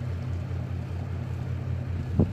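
A steady low mechanical hum with a slight regular pulse, like a running engine or machine.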